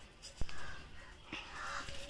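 A sharp click about half a second in and a smaller one later, from tablets being handled in a small steel bowl, with birds calling in the background.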